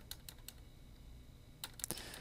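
Faint keystrokes on a computer keyboard: a few near the start and a quick cluster near the end.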